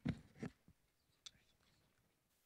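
Low, muffled voices off the microphone, a few quiet words in the first half second, too faint to make out. About a second later there is one short, faint high-pitched tick, then only faint traces.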